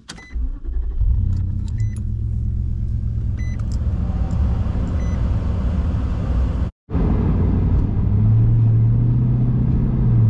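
Car engine started with the key about a second in and idling steadily, while a warning chime beeps about every second and a half. After a brief cut, the engine runs on with its note rising as the car pulls away.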